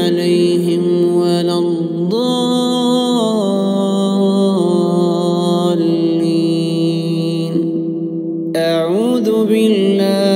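A man chanting Quranic recitation in melodic tajweed style, drawing out long held notes that step slowly up and down in pitch, with a brief pause for breath about eight seconds in.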